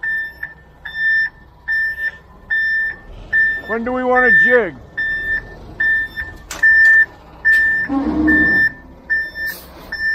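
Concrete mixer truck's backup alarm beeping in reverse: one steady tone repeating about once every 0.8 s over the truck's running diesel. A man's shout about four seconds in, another voice near eight seconds, and a burst of hiss near the end.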